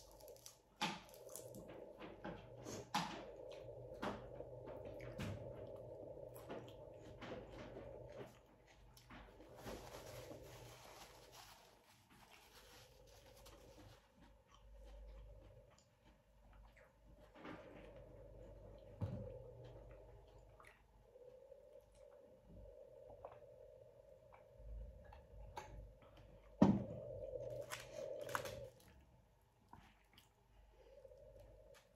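Close-miked eating: soft chewing, lip smacks and small clicks of food being taken by hand and chewed. Near the end there is a louder short crinkle of aluminium foil over a faint steady hum.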